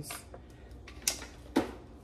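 Handling noise as cream cheese is pushed out of a foil wrapper into a plastic blender jar, with two short sharp clicks or knocks about a second in and a second and a half in, the second one louder.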